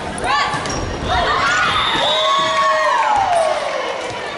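Women volleyball players shouting in a gym hall. Short calls come first, then several voices shout and cheer together for about three seconds as the rally ends, with one long cry sliding down in pitch near the end.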